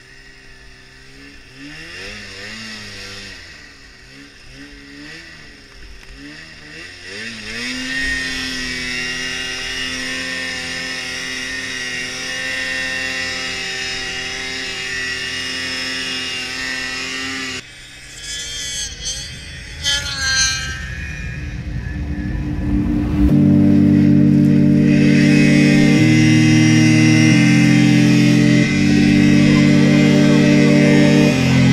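Two-stroke engine of an Arctic Cat M8000 mountain snowmobile, heard from the rider's seat. It revs up and down in the first several seconds, then holds a steady high pitch. About 23 seconds in, loud electronic music with a stepped synth melody comes in over it.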